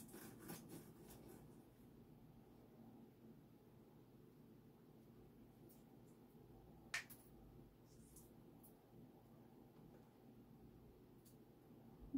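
Near silence with a few faint small clicks and one sharper click about seven seconds in: the shell of a hard-boiled egg being cracked and peeled off by hand.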